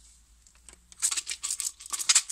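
Double-sided adhesive tape being pulled off and its backing peeled, a quick run of crackling, tearing rustles that starts about a second in.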